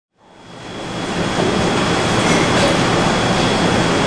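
A dense, steady rushing noise that fades in over the first second and a half and holds loud, with a faint high steady tone running through it, stopping abruptly at the end.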